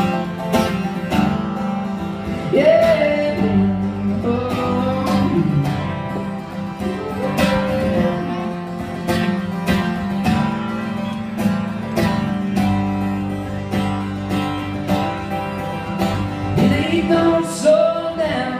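Two acoustic guitars playing a country song live, steady strumming with picked lines over it during a break between sung verses.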